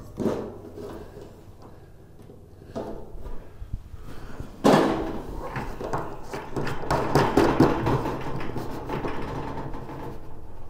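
Drain fitting being hand-tightened onto the underside of a stainless steel utility sink: knocking and scraping of the fitting and hands against the sink. A knock comes right at the start, and from about halfway the handling gets busier and louder.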